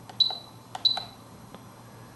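Spektrum DX7se radio transmitter giving two short, high key-press beeps about two-thirds of a second apart. Each beep follows a click of the scroll rocker and confirms a step through the system menu. A further soft click comes near the end.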